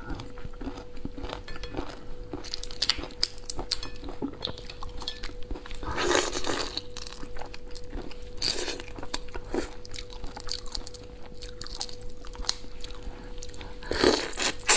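A large prawn's shell being cracked and peeled apart by hand, with crackling and clicking, mixed with chewing and lip smacking. The crackles come louder about six seconds in and again a couple of seconds later.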